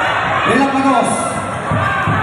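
Crowd of basketball spectators shouting and cheering, many voices overlapping, with a few individual shouts rising and falling above the din.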